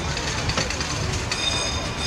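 Double-decker tour bus driving, with a low rumble and a steady hiss. About a second and a half in, a high, thin squeal starts and holds for about a second.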